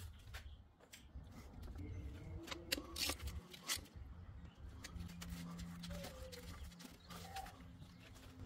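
Faint clicks and small metallic ticks of an Allen wrench turning a transmission drain plug back into its housing, mostly in the middle of the stretch. A faint steady low tone joins about five seconds in.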